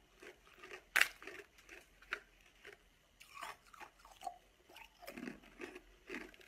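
Close-up crunching of coloured ice balls bitten and chewed: a string of short, crisp cracks with a sharp loud crack about a second in, then smaller crackles as the ice is ground between the teeth.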